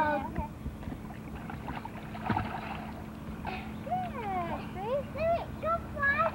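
Water splashing in a swimming pool about two seconds in, then young children's high voices calling out with sliding pitch in the second half.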